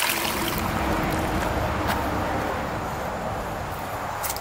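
Shallow creek water running over rocks, a steady rushing trickle.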